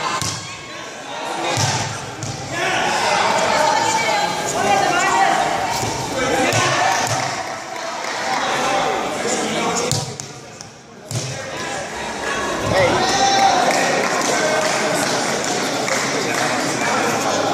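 Dull thuds of bodies and feet landing on tatami mats during an aikido randori bout, several times, in a large echoing hall, under indistinct voices calling out.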